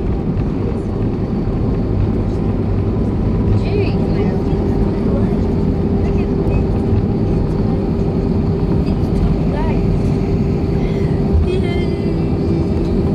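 Steady cabin noise of an Airbus A320 taxiing: a low rumble of engines and wheels on the ground with a steady hum over it.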